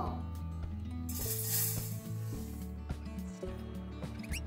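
Background music with held tones. About a second in, a short bright hiss comes in under it, from dry rice being poured out of a measuring cup.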